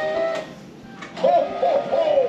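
Christmas music with a singing voice, played through the small built-in speaker of a life-size animated Santa figure. Steady notes open it, and a sung phrase comes in past the middle.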